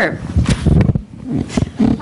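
Microphone handling noise: irregular low rumbles and knocks, with brief scraps of voice.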